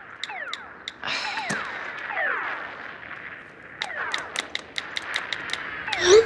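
Electronic sound effects from phone games: a string of short falling chirps, with a quick run of sharp clicks about four seconds in.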